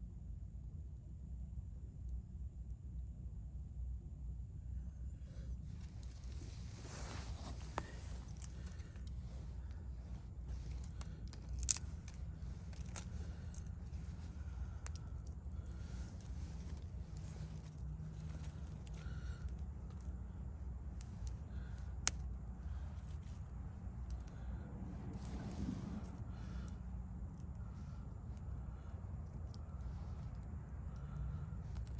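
A ferrocerium rod being struck with a steel striker, in repeated short metal-on-metal scrapes with scattered sharp clicks, starting about five seconds in. Two louder snaps come about halfway through. A steady low outdoor rumble lies underneath.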